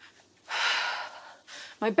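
A woman's short, sharp breath, a gasp lasting about half a second, taken just before she speaks.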